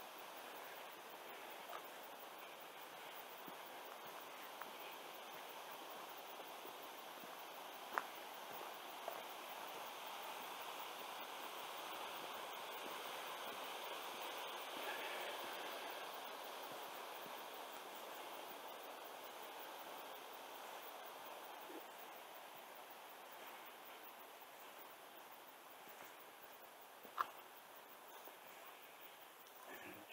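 Faint, steady rush of a small creek flowing over rock, growing a little louder midway and easing off later, with two brief clicks.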